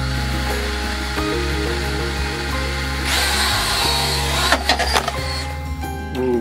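Holy Stone HS160 Shadow mini drone's propellers whirring as it powers up on a table and tries to lift off, louder from about three seconds in, with a few knocks, then stopping shortly before the end. Background music plays throughout.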